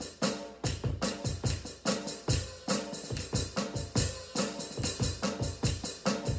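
Drum kit played with wooden sticks in a steady, brisk groove: sharp strikes several times a second, with deep bass-drum thumps among them.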